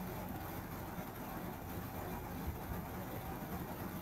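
Steady low background noise, a hum and hiss of the recording room and microphone, with no distinct events.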